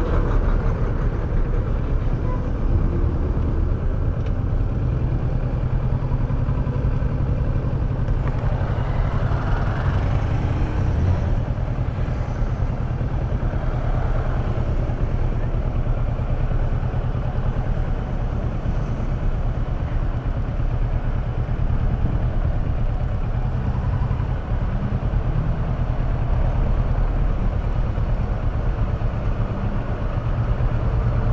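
Kawasaki Versys 650's parallel-twin engine running steadily at low speed, its pitch shifting slightly now and then, with the noise of surrounding road traffic.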